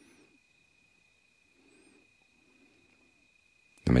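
Near silence in a pause between speech, with a faint steady high tone and three soft, low hoot-like sounds, each about half a second long.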